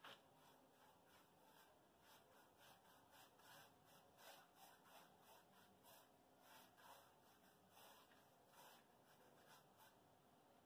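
Very faint, irregular brushing and scratching: a small paintbrush stroking dark brown paint along the grooves of a rough, textured mortar wall.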